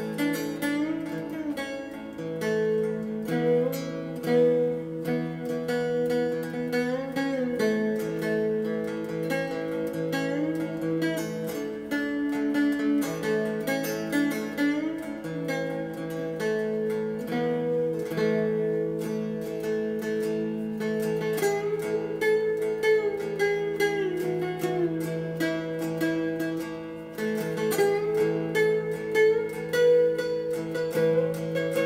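Ben Diddley #18 electric cigar box guitar played solo: a picked melody with sliding pitch glides over a steady low drone note that drops out briefly around the middle.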